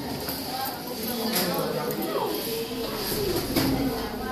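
Schoolchildren's voices chattering and overlapping, with no clear words, and a few light knocks now and then.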